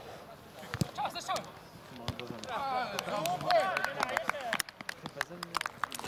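Footballers' voices calling out across an outdoor pitch, with a few sharp knocks of a football being kicked, the first a little under a second in and several more near the end.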